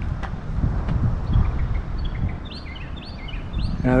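A small bird giving a quick run of short, high chirps in the second half, over a steady low background rumble.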